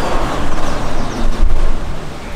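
Large steel-framed glass sliding door rolling open along its track: a broad rumbling slide that fades out about a second and a half in, over a steady low rumble.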